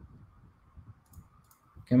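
A few faint clicks of a computer mouse during a quiet pause, over a low steady hiss.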